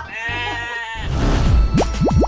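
A high, held 'aah' with a slight waver, under a second long, then a swoosh transition effect with rising pitch glides and a low swell, leading into the outro jingle.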